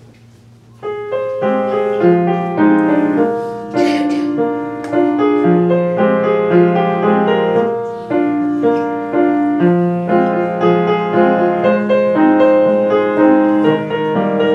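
Upright piano played solo: after a brief quiet moment, the playing comes in about a second in and carries on as a steady flow of chords and melody notes.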